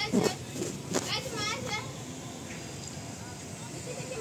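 A couple of knocks from the phone being handled, then a small child's high-pitched voice in a quick run of short squeals, about a second in.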